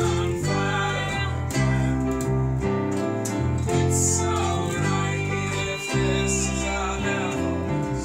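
A small band playing a song: electric bass, electric keyboard and a strummed small-bodied acoustic instrument, in a steady run of chords with no break.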